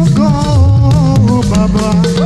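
Live African gospel band: a lead voice singing over shekere gourd rattles, drums and a bass line.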